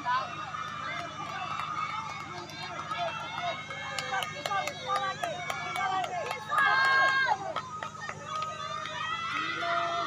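Spectators' voices calling and cheering at once, overlapping throughout, with one loud drawn-out shout about six and a half seconds in, as runners race past.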